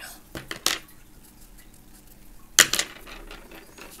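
A few short, sharp knocks on the tabletop: two light ones under a second in and a louder one about two and a half seconds in.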